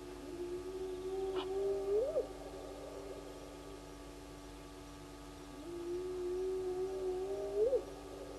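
An animal's long, drawn-out call, given twice, each held on one low note for about two seconds and then sweeping sharply up before it breaks off.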